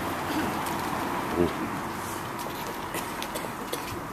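A pigeon coos once, briefly, about a second and a half in, over steady outdoor background noise.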